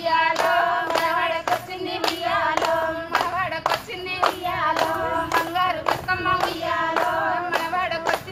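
A group of women singing a Bathukamma folk song together, with sharp hand claps about twice a second keeping the beat of their circle dance.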